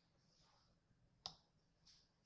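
Near silence broken by a sharp click a little over a second in and a softer click near the end, typical of a computer mouse being clicked.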